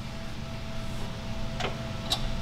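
Hand tool clicking once against the anti-roll bar link under the car about one and a half seconds in, over a steady low hum with a thin steady tone.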